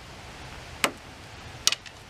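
Two light clicks, the second a quick double, as a plastic spice shaker is handled and set back down on the table.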